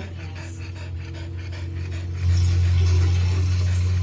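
A French bulldog mother panting with her mouth open as she nurses her puppies, over a steady low hum that grows louder about two seconds in.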